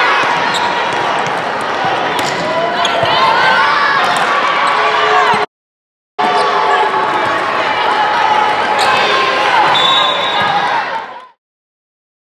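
Indoor volleyball game sound: players' and spectators' voices echoing in a large hall, with sharp smacks of the ball being hit during the rally. The sound breaks off for a moment past the middle, picks up again, then fades out shortly before the end.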